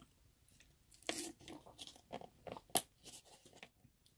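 Quiet handling noises: a string of brief crunching, rustling sounds starting about a second in, with one sharper click near the end.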